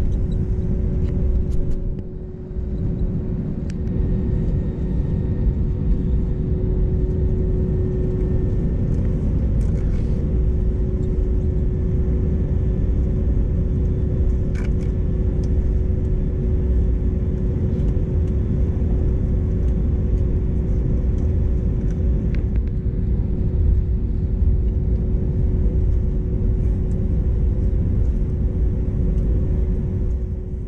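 Cabin noise of an Airbus A320neo taxiing after landing, heard from a window seat over the wing: a steady low rumble with a constant hum. The loudness dips briefly about two seconds in.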